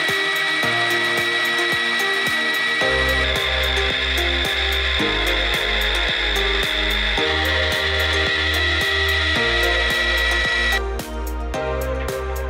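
Pillar drill boring a bolt hole through a metal wheel hub flange: a steady high whine from the bit cutting metal that stops sharply near the end. Background music with a steady beat plays throughout.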